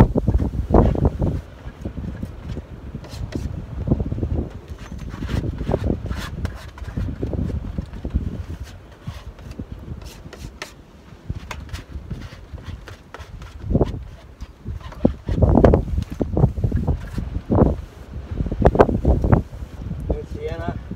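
Strong, gusty wind buffeting the microphone: a low rumble that comes and goes in surges, loudest just after the start and again over the last few seconds, with scattered light clicks and taps.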